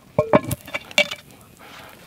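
Cast-iron Dutch oven lid clinking against the pot as it is handled back on with a stick: a few sharp metallic clinks in the first second, some ringing briefly.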